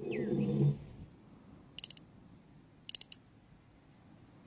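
Close-miked crisp clicks in two quick bursts of several taps each, about a second apart, with a slight high ring. They follow a short low hum-like voice sound at the start.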